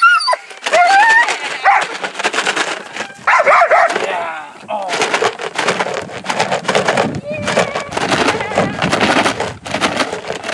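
A protection dog growling and barking as it grips a decoy's padded bite sleeve through a car window. A man yells wordlessly over it. Rough, pulsing noise dominates the second half.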